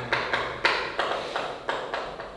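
Chalk tapping against a blackboard while writing: a run of sharp taps, about three a second.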